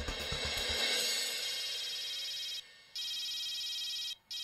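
Background music fading out in the first second as a telephone starts ringing: a high electronic trill in rings of about a second with a short gap between them.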